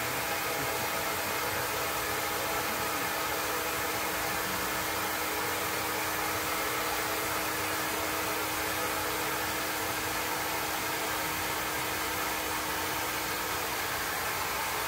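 Steady, even background hiss with a constant low hum.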